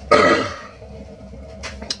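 A man's throaty, burp-like vocal sound at the start, then a brief cough near the end.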